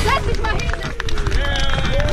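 Wordless voices calling out in long, sliding tones, with a few sharp clicks.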